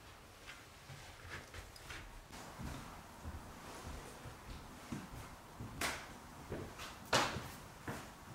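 Quiet room with scattered soft knocks, clicks and low thumps of people moving about and handling things, with two sharper knocks about six and seven seconds in.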